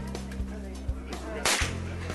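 A single sharp rifle shot about one and a half seconds in, heard over background music.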